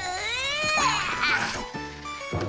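A high-pitched cartoon voice giving one long wordless cry whose pitch rises, over background music.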